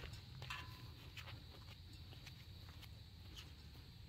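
Quiet outdoor ambience with a low steady rumble and a scatter of soft clicks and taps from footsteps on grass.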